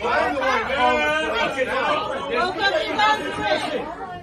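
Several people's voices talking over one another, loud enough that no single speaker stands out.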